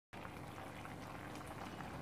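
Chicken curry with potatoes simmering in a frying pan on a gas stove, a steady hiss of gentle boiling. It follows a brief dropout at the very start.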